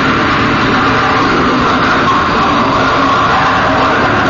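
Heavy metal band playing live at full volume: a dense, unbroken wall of distorted sound with drums.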